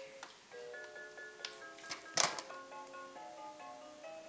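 Simple electronic toy melody in plain, clean beeping notes, like a child's musical toy playing a tune. A short noise cuts across it about two seconds in.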